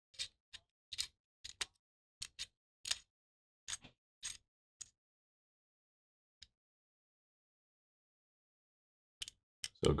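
Small sharp metal clicks and ticks from a hex key working machine screws into the plenum of an Umarex Notos air rifle, about a dozen over the first five seconds, then a pause and two more clicks near the end.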